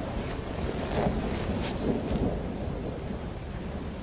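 Steady hiss of rain with a low rumble of a thunderstorm underneath, swelling slightly about a second in.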